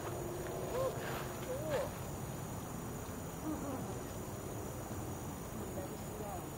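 Quiet evening outdoor ambience: a steady high insect drone, with a few short chirping calls about one and two seconds in.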